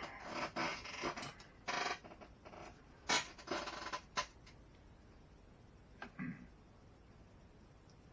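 Handling noise on a workbench: a string of short scraping and rustling sounds over the first four seconds, then a single click about six seconds in.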